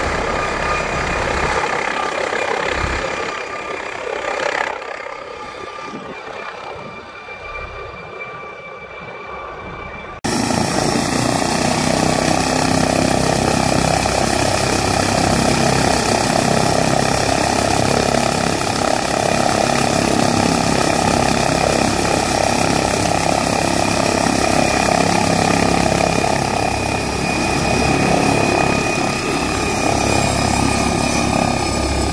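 Helicopter running, at first in flight and growing fainter over several seconds. After an abrupt cut about ten seconds in, it runs steadily on the ground with its rotors turning and a steady high whine over the rotor rumble.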